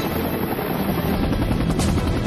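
Military helicopter rotors chopping steadily, a cartoon sound effect.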